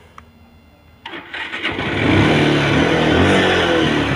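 Bajaj Pulsar 150's single-cylinder engine being started on the electric starter: it catches about a second in, revs up once and drops back toward idle. It starts readily, which the seller takes as a sign the battery and starting are in good order.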